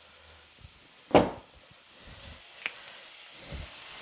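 Halved Brussels sprouts sizzling faintly in oil and butter in a stainless steel frying pan, with one sharp knock about a second in and a small click later.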